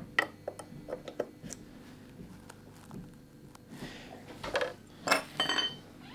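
Hand plane and wooden parts handled on the workbench: a quick run of light clicks and knocks in the first second and a half, then a short scrape about five seconds in, followed by a faint metallic ring.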